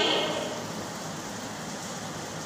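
A voice trails off just after the start, then steady background noise with no clear events.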